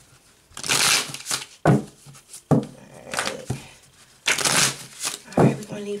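A deck of tarot cards shuffled by hand: two longer riffling bursts, about a second in and again past four seconds, with short sharp snaps of the cards in between.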